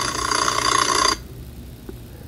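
A sustained ringing sound of several held steady tones that cuts off suddenly about a second in, leaving faint hiss.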